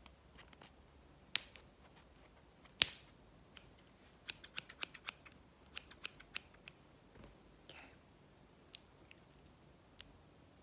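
Pair of scissors snipping, a series of sharp metal clicks: two loud snips in the first three seconds, then a quick run of smaller snips in the middle and one more near the end. The scissors are at work opening a hair-serum bottle's packaging.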